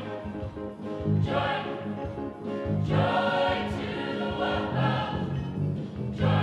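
Mixed-voice gospel choir singing in harmony, in phrases with brief breaks between them.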